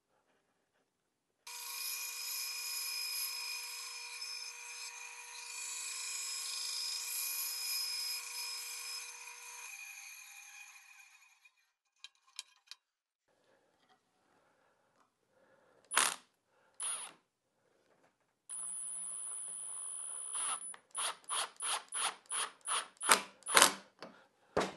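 Bandsaw running and cutting into a small wooden block for about ten seconds, with a steady motor whine. A couple of knocks follow. Then a cordless impact driver runs briefly and is fired in a quick series of short bursts to the end.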